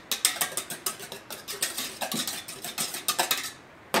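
A whisk scraping and clicking against a stainless steel bowl as gelled crème anglaise is mixed into whipped cream, a quick run of small strokes that stops briefly just before a sharp knock at the end.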